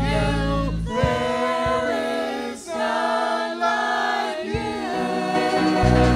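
Church praise band leading a worship song: several voices singing together with instrumental accompaniment. The low held accompaniment drops out about a second in, leaving the voices, and comes back near the end.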